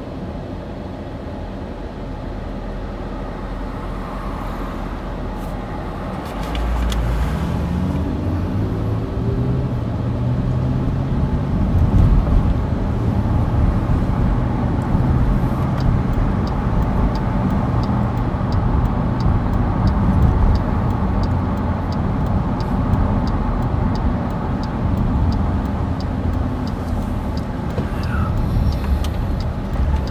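Car engine and road noise heard from inside the cabin. It starts as a low idle at a stop. About six seconds in the car pulls away, with the engine pitch climbing as it accelerates, then settles into a steady cruising rumble of engine and tyres. In the second half a faint regular ticking, about two a second, runs alongside.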